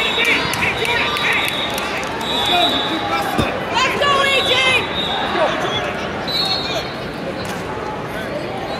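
Background of an indoor wrestling tournament: many voices of coaches and spectators echo through the hall, mixed with short high squeaks and thuds from wrestlers' shoes and bodies on the mats.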